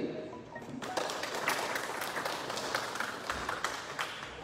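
A small audience clapping by hand, starting about a second in, with individual claps standing out.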